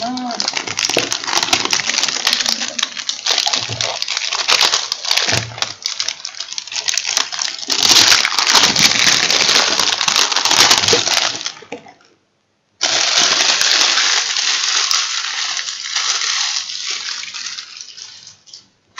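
Clear plastic packaging crinkling and crackling loudly as it is handled and pulled at, with a brief break about twelve seconds in.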